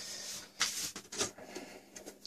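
A few soft scrapes and rustles as the sandblasted aluminium top panel of a Streacom F12C computer case is slid free and lifted off by hand.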